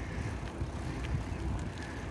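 Wind buffeting the microphone over a low, uneven rumble of rolling motion.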